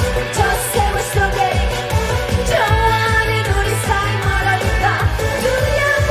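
A woman singing a Korean pop-style song live into a handheld microphone over an amplified backing track with a steady low beat.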